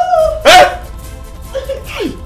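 A short, loud shouted cry about half a second in, followed by soundtrack music with a steady held note.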